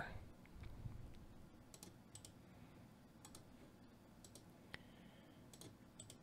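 Near silence with a handful of faint computer mouse clicks, irregularly spaced, as entries are selected and copied in a right-click menu.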